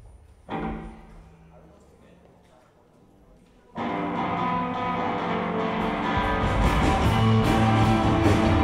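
Live rock band at the start of a new song. A single electric guitar chord is struck about half a second in and rings out and fades. About four seconds in the full band comes in loud, with distorted guitars, bass and drums, and cymbal hits from about six seconds.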